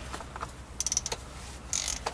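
Socket ratchet on the oil filter cap clicking in a quick run as its handle is swung back, about a second in, with a shorter burst of clicks near the end.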